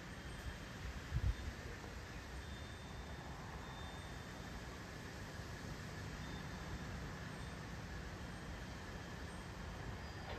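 Steady low outdoor background rumble, with one brief low thump about a second in.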